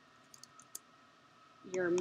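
A few quiet keystrokes on a computer keyboard, typing a word, in the first second. A woman's voice starts near the end.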